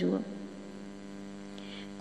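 A steady electrical hum with a row of evenly spaced overtones, the strongest low down, holding level throughout. A spoken word fades out at the very start.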